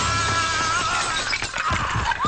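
A window pane shattering as a man is thrown through it: a loud burst of breaking glass that thins out over about a second and a half, with the film's music underneath.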